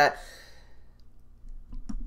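Faint clicks of a computer mouse: a single one about a second in and a few close together near the end.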